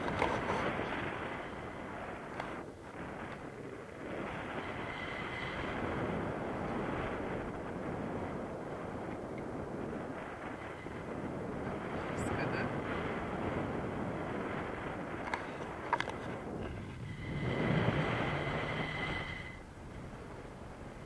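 Wind rushing over the camera microphone during a tandem paraglider flight, a steady noise that swells and dips, with a couple of brief knocks.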